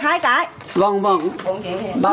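Speech only: a woman talking in Vietnamese, with a short pause about half a second in.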